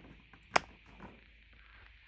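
A single sharp click about half a second in: a power strip's rocker switch flipped off, cutting power to a Roku TV to reset it.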